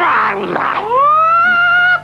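A cartoon character's long, high yell as he is hurled through the air: a rough burst at first, then a cry that dips, rises in pitch and holds high before cutting off suddenly.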